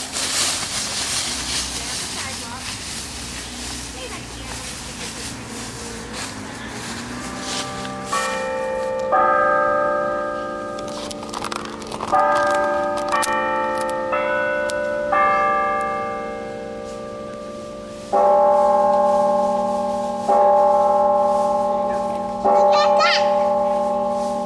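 Clock tower bells chiming a short tune of several notes, starting about a third of the way in, then striking the hour with slow single strokes about two seconds apart, each left ringing.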